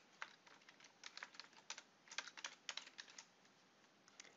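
Faint typing on a computer keyboard: a quick, uneven run of key clicks as a word is typed, stopping about three seconds in.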